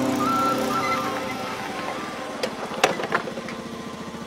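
Music fades out over about the first second, leaving a small motorcycle engine running as it tows a loaded passenger cart. Several sharp knocks come from about two and a half seconds in.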